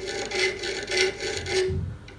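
A fine-grade file rubbing metal on metal in a run of short, quick strokes across the top surface of a hollow chisel mortiser's auger bit. The strokes hone the single cutter to take off the burr and bring back a sharp edge.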